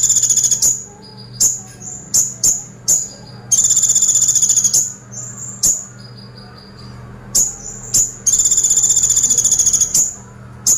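Kolibri ninja (Van Hasselt's sunbird) singing: sharp, very high chips between three fast rattling trills, one at the start, one about three and a half seconds in and one from about eight seconds in. These trills are the 'tembakan' ('shot') bursts that Indonesian bird keepers prize in this bird's song.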